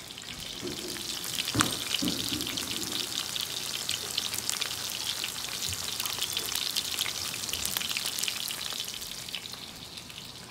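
Shrimp meatballs shallow-frying in oil in a stainless steel skillet: a steady, dense sizzle full of fine crackling pops. It grows louder about a second in and fades near the end, with one sharp tap about a second and a half in.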